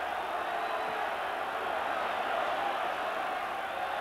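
Football crowd in the stands singing and chanting: a steady wash of many voices with no single voice standing out.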